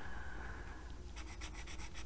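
Faint scratching of an AspireColor alcohol marker's tip on paper as it fills in a small shape, turning from a light rub into a rapid run of short back-and-forth strokes about a second in.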